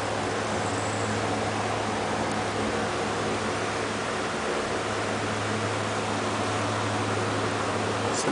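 Steady room noise: an even hiss over a low, constant hum, like a fan or air conditioner running.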